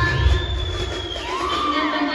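Indian film-song dance remix played loud over a hall's sound system, with an audience cheering and whooping over it; the heavy bass beat drops out near the end.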